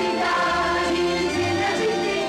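Soundtrack music with a choir singing a bright, cheerful song.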